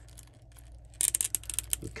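A quick run of small plastic clicks and rustles for just under a second, about halfway in, as an action figure's leg is swung forward at the hip and handled.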